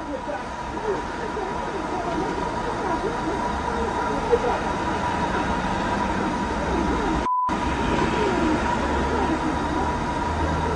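Muffled, indistinct voices of two men arguing, heard through a steady hissing noise floor with a constant thin high tone running under it. The audio cuts out completely for a moment about seven seconds in.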